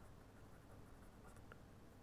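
Faint scratching of a pen writing on paper, barely above the room's background hiss.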